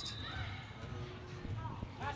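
Faint gymnasium background during a youth basketball game: distant voices of players and spectators over a low, steady room rumble.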